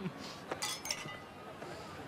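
Champagne flutes clinking together in a toast: a few sharp glass clinks about half a second in, each ringing briefly.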